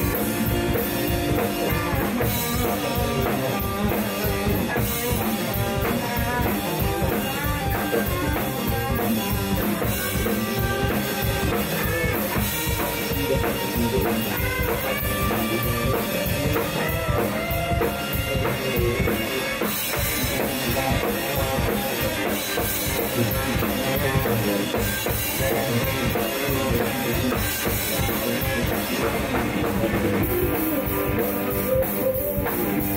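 Rock band playing live: a drum kit keeping a steady beat under two electric guitars.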